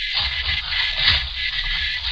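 Radio-drama sound effect of scuffling and scraping, a few irregular low rubs and knocks, standing for men sliding through a narrow hole into a cellar, heard over the steady hiss of an old broadcast recording.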